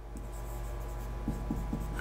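Marker pen writing on a whiteboard, a run of short strokes.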